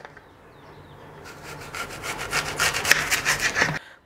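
Kitchen knife sawing through a whole raw apple in quick back-and-forth strokes, a rasping scrape of blade through crisp flesh that grows louder and stops suddenly near the end.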